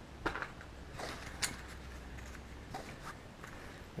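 Faint handling noise from gear being lifted out of a padded camera bag: a few soft clicks and rustles, the sharpest about a second and a half in, over a low hum.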